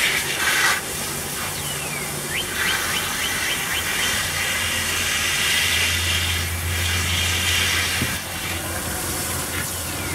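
A garden hose spray nozzle hisses steadily as it rinses a cast iron Dutch oven, with water splashing into the pot and onto a plastic tarp. The spray flushes out the rusty, foamy water left from a long vinegar-and-water soak.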